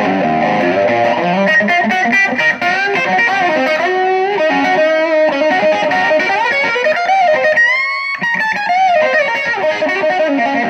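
Telecaster-style electric guitar fitted with an ashtray-style bridge, played with a high-gain overdriven tone on the bridge pickup: a run of single-note lead licks, with a note bent upward about three-quarters of the way through.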